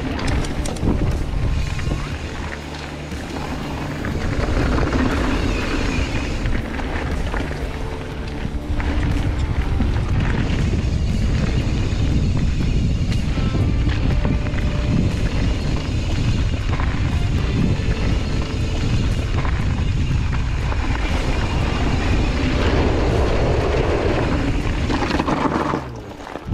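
Background music over wind rushing across the microphone and the rumble of mountain-bike tyres rolling on a dirt trail.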